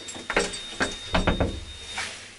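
Small passenger lift in motion: a thin steady high whine with a run of knocks and clunks from the car. The whine cuts off at the end as the lift stops, stuck between floors.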